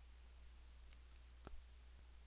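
Near silence: room tone with a low steady hum, a few faint ticks, and a single short click about one and a half seconds in.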